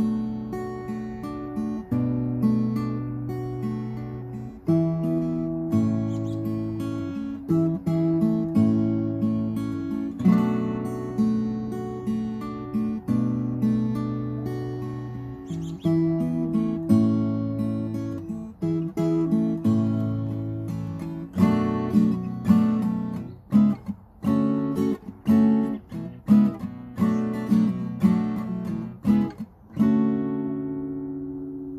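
Acoustic guitar strummed in ringing chords. In the last third the strumming turns choppier, with short muted gaps between strokes.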